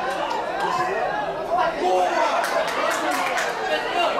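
People at a football match talking and calling out over one another in a steady chatter, with a few short sharp knocks between the voices.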